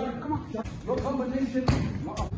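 Voices talking in a large hall, and near the end a single loud thump of a gloved punch landing on a heavy punching bag.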